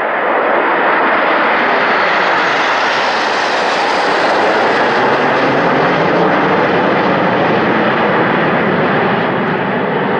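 Nine BAE Hawk T1 jets flying a low formation pass overhead, their jet engines a loud, steady rush. It swells sharply at the start, is brightest a few seconds in, and eases slightly as the jets move away near the end.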